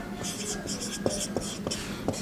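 Felt-tip marker writing on a whiteboard: a string of short, high scratchy strokes with a few light taps as the letters are formed.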